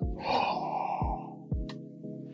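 A man's gasp, a breathy intake about a second long, over steady background music.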